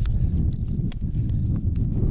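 Wind buffeting the microphone as a steady low rumble, with a scatter of small, irregular clicks and taps from a plastic pasta pot being handled.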